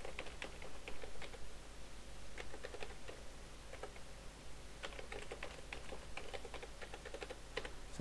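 Typing on a computer keyboard: a run of quick, irregular key clicks with a brief pause about four seconds in.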